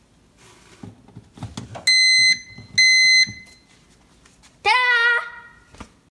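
Breville BOV810BSS smart toaster oven's electronic controls powering up as it is plugged in: a few faint clicks, then two short, loud beeps about a second apart, then a longer chime that rises and steps down in pitch near the end. Power is reaching the oven again, a sign that the new thermal fuse has restored the circuit.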